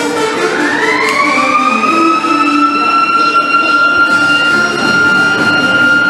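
A siren winding up: one loud tone that rises in pitch over about two seconds, then holds steady at a high pitch.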